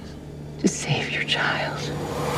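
A whispered voice speaking over a steady low hum.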